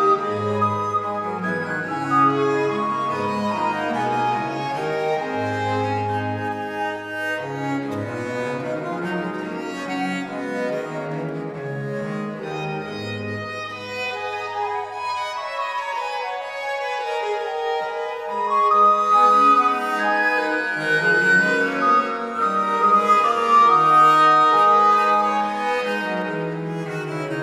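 Early-music ensemble playing a 17th-century piece on historical instruments: baroque violin, recorder and viola da gamba over a continuo. The low bass line drops out for a few seconds in the middle and then comes back in.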